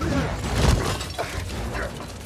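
Film action sound effects: crashing and breaking, with a heavy impact about two-thirds of a second in, over a low rumble and background score.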